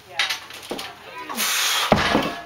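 Strained breathing from a lifter during a heavy one-arm dumbbell row, with a loud hissing exhale late on. It ends in a sharp thud as the 160 lb dumbbell is set down on the rubber floor mat.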